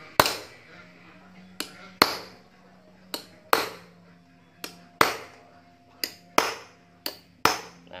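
A steel claw hammer strikes a ring spanner laid flat over the old seal, driving a new fork oil seal into a Yamaha Jupiter MX front fork tube. There are about a dozen sharp metallic blows, often in pairs. The spanner spreads each blow so the seal goes down evenly.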